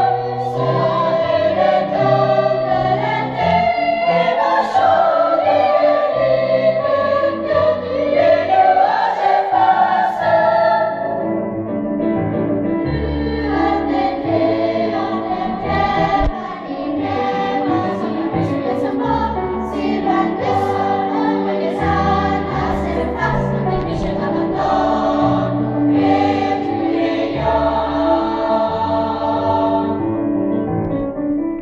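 Children's choir singing a choral piece in several parts under a conductor.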